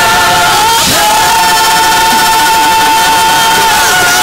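Church choir and congregation singing a gospel praise song with musical accompaniment, holding one long note from about a second in until just before the end.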